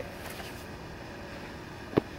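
Steady background noise with no distinct source, and one short knock near the end.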